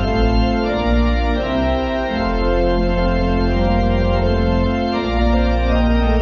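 Organ music: slow, held chords over a deep sustained bass note, the harmony shifting every second or few.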